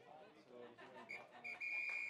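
Referee's whistle: one long steady blast that starts about a second in, over faint spectator chatter.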